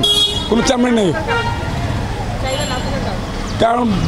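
A man's voice over steady street traffic noise, with a high-pitched vehicle horn tooting briefly twice: once at the start and again about two and a half seconds in.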